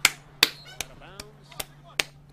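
Hand claps: a steady run of about five or six sharp claps, roughly two and a half a second.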